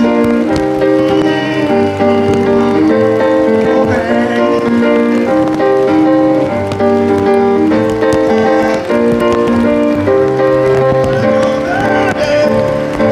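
Live reggae band playing an instrumental passage: sustained keyboard chords changing every second or so over a steady bass line.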